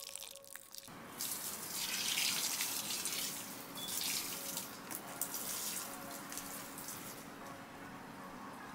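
Water poured from a jug into a potted plant's soil, a splashing stream that starts about a second in and swells and eases as it pours.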